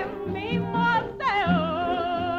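Cuban song: a woman singing with wide vibrato over an orchestra, gliding down about a second and a quarter in to a long held note, with a bass line repeating notes underneath.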